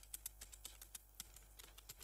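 Faint computer keyboard keystrokes: a loose run of irregular key taps as a line of code is typed.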